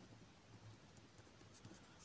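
Near silence, with faint scratching of a pen writing on a paper workbook page.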